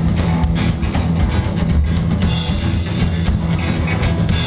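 Live rockabilly band playing loud: a drum kit beating over strong, steady bass, with cymbals washing in about halfway through.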